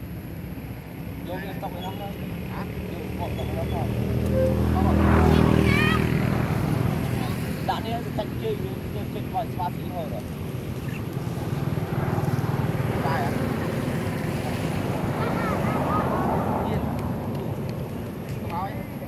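Engine of a passing motor vehicle, a low drone that swells to its loudest about five seconds in and then fades to a steady background hum. Short, high chirping calls come and go throughout.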